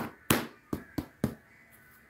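Five sharp taps or knocks in quick succession over about a second and a half.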